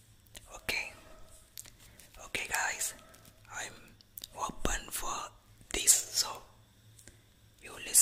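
A man whispering close to the microphone in short phrases with pauses between them.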